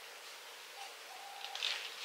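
Faint, low cooing from a bird, a few short notes at one pitch, with a soft rustle about one and a half seconds in.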